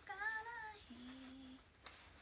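A woman's voice singing a few notes without words: a short phrase that rises and falls, then one lower note held for about half a second, followed by a sharp click near the end.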